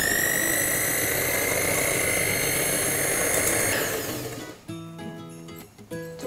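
Electric hand mixer beating cream: the motor whine rises in pitch as it starts, runs steady for about four seconds, then winds down and stops. Background music follows.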